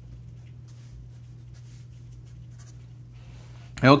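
Fine-point Sharpie marker writing on paper: faint, short scratchy strokes over a steady low hum.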